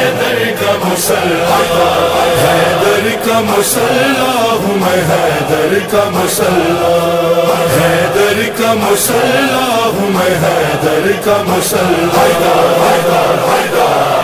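Male voices of a devotional manqabat chanting together in chorus, holding and bending pitched lines, with a sharp percussive hit now and then.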